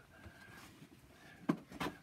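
Quiet room tone in a pause between words, with a short sharp click about one and a half seconds in and a fainter one just before the speech resumes.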